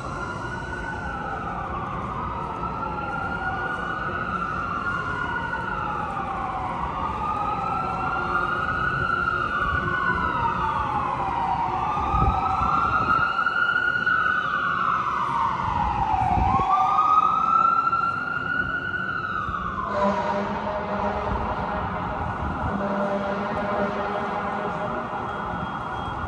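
An emergency vehicle's siren wailing in long, slow rising-and-falling sweeps that overlap one another. It grows louder, then cuts off suddenly near the end.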